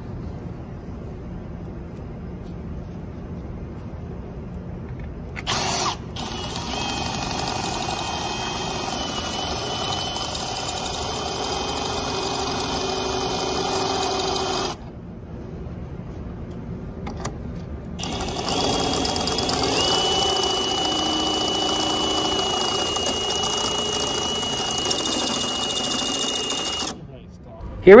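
Cordless drill spinning a tip-dressing cutter on the copper electrode tips of a squeeze-type resistance spot welder, dressing the tips back to their correct shape. It runs in two long steady spells with a high whine, the first starting about five seconds in and the second about eighteen seconds in.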